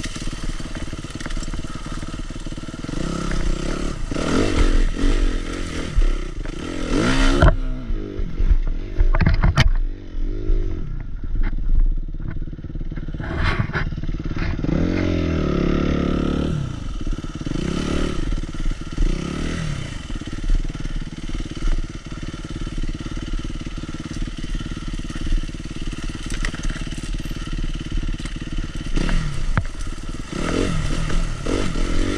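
Suzuki RM-Z250 four-stroke dirt bike engine revving in repeated surges, pitch climbing and dropping, while the bike pushes through brush with branches scraping and clattering against it.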